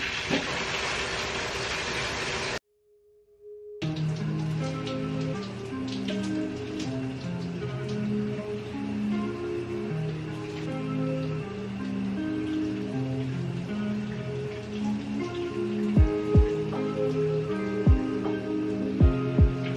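Shower water running hard for about two and a half seconds as the valve is turned on, cut off suddenly. After a short silence comes background music of slow held chords, with a few deep beats near the end.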